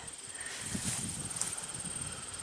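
Quiet outdoor garden background: a faint, steady, high-pitched pulsing buzz throughout, with a few soft low thumps in the middle as the camera is carried toward the next rose bush.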